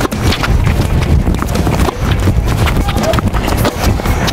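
Tennis balls struck by a racket and bouncing on a hard court in quick succession during a quick-feed backhand drill, a rapid irregular series of knocks over a low rumble.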